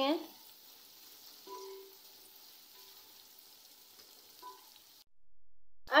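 Faint sizzle of sliced onions and garlic paste frying in oil in a steel pot, stirred with a spatula. The sound cuts to total silence for about a second near the end.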